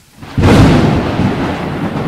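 Thunder-like rumble sound effect: a loud burst of rumbling noise swells in about half a second in and slowly fades.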